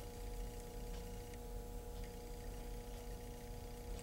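Faint room tone: a steady low hum with a few faint steady tones beneath it, and no distinct sounds.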